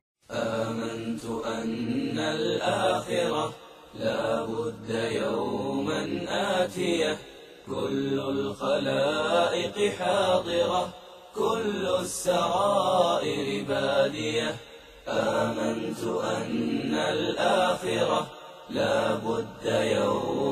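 Arabic verse chanted by a voice in a nasheed style, in long held phrases about every four seconds with short pauses between them.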